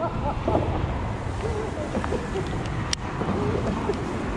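Wind buffeting the microphone over a steady low rumble, with one sharp click about three seconds in.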